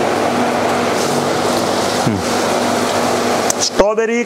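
Loud, steady background noise with a low hum running through it for about the first two seconds and a couple of brief vocal sounds. It cuts off abruptly just before clear speech starts at the very end.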